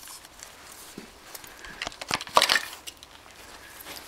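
Handling noise from loading a homemade PVC golf-ball gun: faint knocks and rubbing against the plastic barrel, with one louder, brief scraping sound a little past two seconds in.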